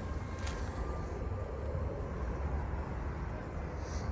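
Steady low rumble of distant engine noise, with no clear start or stop.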